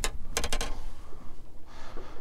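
Handling noise: a sharp tap at the start and a quick run of clicks about half a second in, over a steady low rumble of wind on the microphone.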